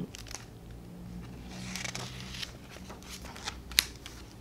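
A picture book's page being turned by hand: a soft paper rustle with a few light ticks and one sharp click near the end.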